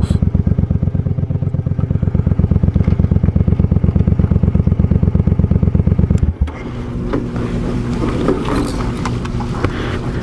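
Suzuki Boulevard C50's 805 cc V-twin idling with an even, rapid run of exhaust pulses, then switched off suddenly about six seconds in. After it cuts out, wind noise and a few light clicks and knocks remain.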